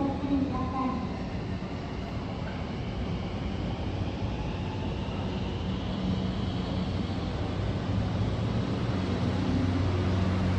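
Thunderbird limited express electric train pulling away at low speed: a steady rumbling hum with a faint whine that rises in pitch as it gathers speed, growing louder toward the end.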